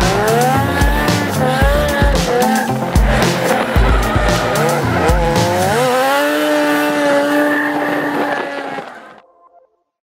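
Drift car's engine revving up and down with tyre squeal as it slides, mixed with music that has a heavy beat. The beat stops about six seconds in and a steady held note follows. Everything fades out about a second before the end.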